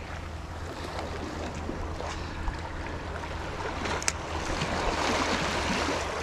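Sea water lapping and sloshing against the rocks of a jetty, a steady wash that grows a little louder after about five seconds. A single sharp click comes about four seconds in.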